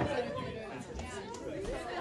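Faint, mixed chatter of audience voices in a hall, with no single voice standing out.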